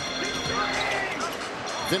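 Basketball arena sound during live play: crowd noise with steady held notes of music from the arena speakers. Sneakers squeak on the hardwood court about half a second in.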